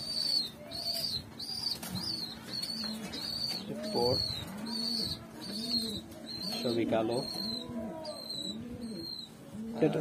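Giribaz pigeons cooing: low, rolling coos repeat about twice a second through the middle of the stretch, loudest around the fourth and seventh seconds. Over them runs a steady train of high, thin peeps, about two a second.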